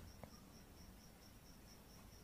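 Near silence with faint cricket chirping, a high chirp about four times a second, the kind of cricket effect used to mark an awkward silence.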